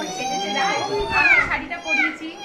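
Children's voices: one long high-pitched squeal that drops in pitch about a second and a half in, over other voices chattering.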